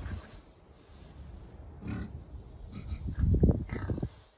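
Pigs grunting close up as they root with their snouts in straw bedding: a short run of grunts about two seconds in, then louder grunts near the end.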